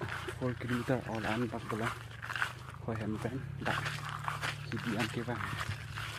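A man talking in short phrases with pauses between them, over a steady low hum.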